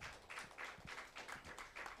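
Light applause: hands clapping in quick, irregular claps, faint.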